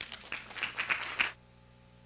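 Audience applauding in an auditorium, a dense patter of claps that cuts off suddenly after a little over a second.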